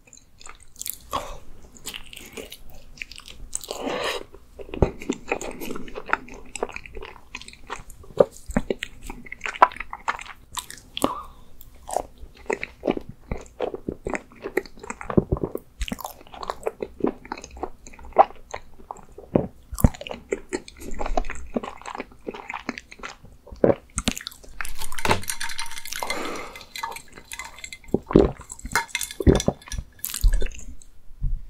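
Close-miked chewing of a frozen rice-cake ice cream (Baskin-Robbins ice jeolpyeon with white bean paste): steady wet chewing with many short sharp mouth clicks throughout.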